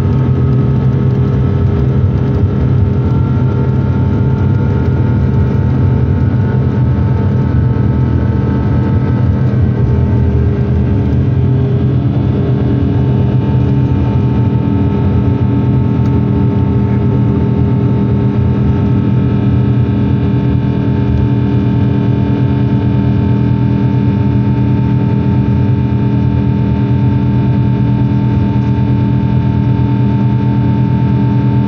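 Inside an airliner cabin during takeoff: the jet engines run at high power through the takeoff roll and climb-out. It is a loud, steady roar with several steady tones, and more high tones join from about halfway through.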